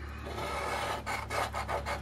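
Scratch-off lottery ticket being scratched with a round coin-like scratcher token. There are quick rasping strokes across the ticket's coating, getting stronger and more distinct after about half a second.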